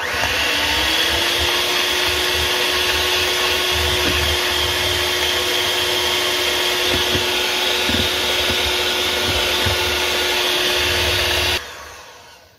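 Electric hand mixer running steadily, its beaters whisking batter in a glass bowl. The motor's hum rises slightly in pitch as it spins up at the start, holds steady, and cuts off suddenly near the end.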